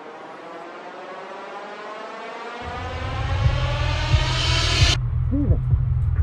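A transition sound effect: a hissing swell rising in pitch and growing louder, which cuts off abruptly about five seconds in. A deep low rumble comes in about halfway through, and a few short rising-and-falling hoot-like tones follow the cut.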